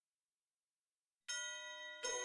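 Silence, then about a second and a quarter in, a single struck bell-like note opens an instrumental music track, ringing on with many overtones and slowly fading.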